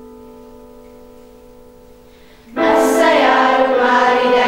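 A held instrumental chord fades away, then about two and a half seconds in a girls' choir starts singing, suddenly much louder.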